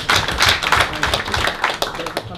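A small audience clapping, a dense run of irregular hand claps.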